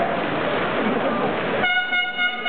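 Arena crowd noise, then near the end a horn starts abruptly: one steady held note with its overtones.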